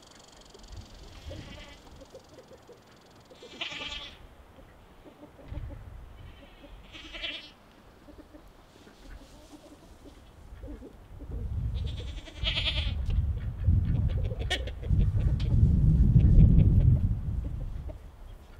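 Three separate drawn-out farm animal calls, each about half a second long, spaced several seconds apart. A low rumble builds in the second half and is loudest near the end.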